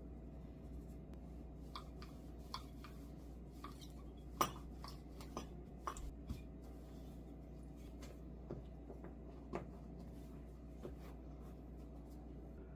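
Scattered light knocks and taps of a wooden rolling pin on a silicone baking mat over a wooden table as soft yeast dough is rolled out. The sharpest knock comes about four seconds in, over a faint steady hum.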